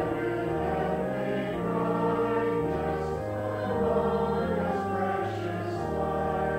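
Congregation singing a hymn to pipe organ accompaniment: long held chords, with the bass stepping from note to note.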